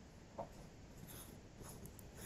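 Near silence: faint room tone with a few soft, brief rustling noises.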